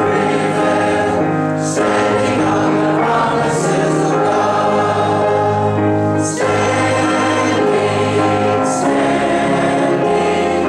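A church congregation singing a hymn together, mixed men's and women's voices on long held notes.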